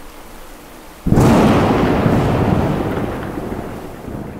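Faint noise, then a sudden loud crash about a second in that rumbles and fades away over the next three seconds.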